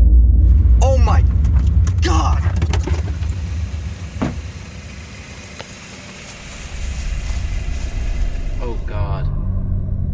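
Car engine rumbling loudly, easing off in the middle and building again. A few short, wavering high sounds come near the start and near the end.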